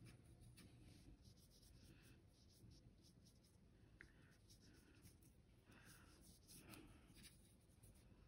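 Faint, scratchy strokes of a watercolour brush working paint onto paper, near silent overall.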